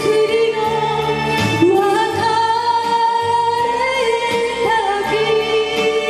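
A woman singing a Japanese kayōkyoku ballad into a hand microphone, with instrumental accompaniment, holding long notes.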